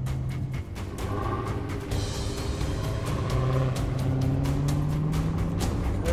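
Dodge Charger SRT Hellcat's supercharged 6.2-litre V8 running at low revs while rolling, heard inside the cabin, its note rising slowly over the last few seconds. Background music with a steady beat plays over it.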